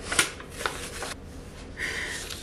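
Paper rustling and crackling as envelopes and printed photo cards are handled, with a few sharper crackles in the first second, then quieter.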